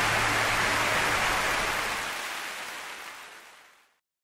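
A steady rushing noise with no tune in it, fading out to silence over the last two seconds.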